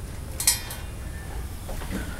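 A short metallic clink about half a second in, from the metal fittings of the trailer's breakaway-switch cable being handled at the tongue, over a low steady background hum.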